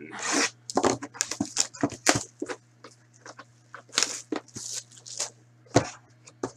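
A cardboard hockey card box being handled and opened by hand: a run of short rustles, scrapes and taps of the card stock, with a sharper knock near the end.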